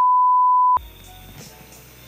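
A steady 1 kHz test-tone beep, the kind that accompanies TV colour bars, cuts off abruptly under a second in. Faint background sound with a low hum follows.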